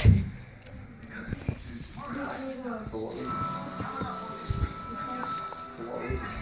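Television audio playing in the room: music and voices, with a few light knocks.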